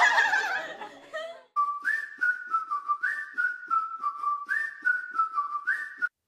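A whistled tune over a light, even clicking beat: a short music jingle with a repeating phrase that steps up and down. Party chatter fades out in the first second before it starts.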